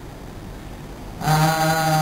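A man's voice through the lecture microphone: a short pause, then, a little over a second in, one long vowel held on a single steady pitch, chanted rather than spoken.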